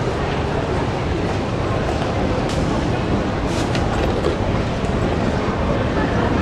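Steady, loud rumbling outdoor noise with faint voices of a crowd mixed in.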